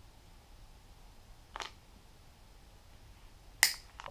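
Quiet room with two short, sharp clicks: a faint one about a second and a half in and a louder, sharper one just before the end.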